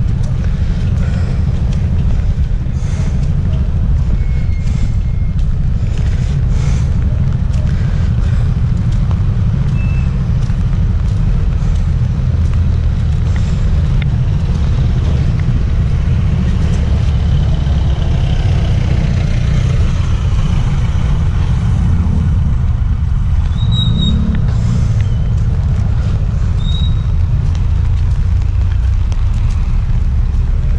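Wind buffeting the microphone: a steady, heavy low rumble, with a few faint short high tones over it.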